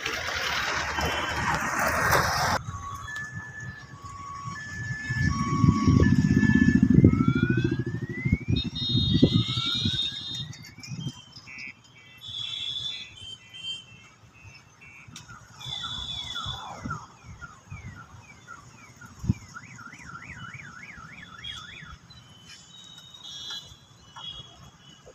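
An electronic alarm siren cycling through its tone patterns: alternating two-note beeps, then rising whoops, then quick falling chirps, then a fast up-and-down warble. A loud low rumble runs under it for several seconds in the first half, after a burst of rushing noise that stops abruptly near the start.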